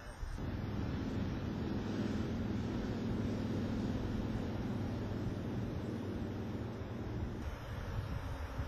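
A steady, low engine drone from a distant motor, with some wind noise on the microphone; it starts abruptly a moment in.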